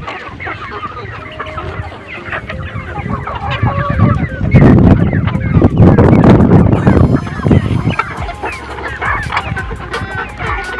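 A flock of free-range chickens clucking while they feed, with many short calls overlapping. About halfway through, a loud low rumble rises beneath the clucking for about three seconds.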